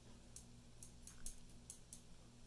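Faint, light ticks, about seven of them and unevenly spaced, of a paintbrush tapping and working watercolour paint against the pans and palette while mixing, over a faint steady hum.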